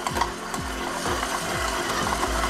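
Electric stand mixer running, its beater breaking up a lump of almond paste in a steel bowl: a steady motor hum with a train of repeated knocks as the paste is struck on each turn.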